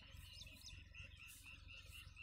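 Near silence: faint, evenly repeated high chirps, about four or five a second, over a low hum.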